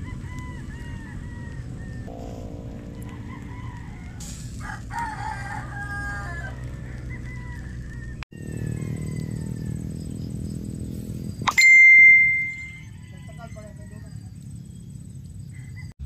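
A loud, held bird call about eleven and a half seconds in, over a steady low rumble, with short chirping bird calls near the start.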